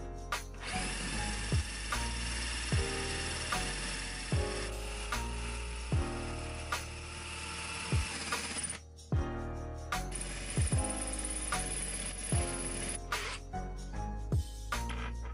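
Cordless drill boring through ceramic wall tile, running steadily for about eight seconds, stopping briefly, then running again for a few seconds with a higher whine. Background music with a steady beat plays underneath.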